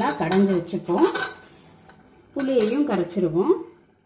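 Metal ladle stirring and mashing cooked toor dal in a metal pressure cooker, scraping the pot's sides and bottom with a squeaky, swooping pitch. Two spells of stirring, with a short pause about a second in.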